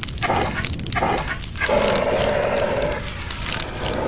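Fire extinguisher spraying in bursts: a hiss that cuts in and out three times, the last burst lasting about a second and a half.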